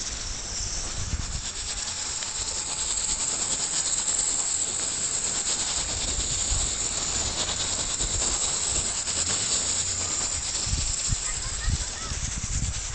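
Steady hiss of a shallow stream running over stones, with irregular low rumbles of wind on the phone's microphone.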